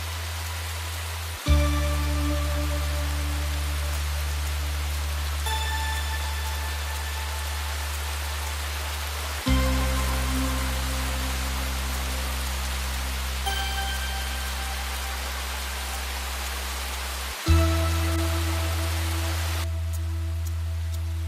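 Steady heavy rain under a background score of low sustained chords that change with a swell three times, about every eight seconds, with a few scattered high held notes above them.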